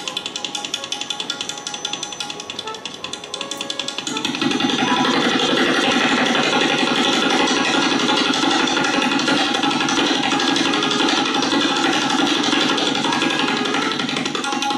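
Solo tabla played in very rapid strokes over a steady harmonium melody repeating the lehra. About four seconds in, the tabla playing becomes louder and denser and keeps up that pace.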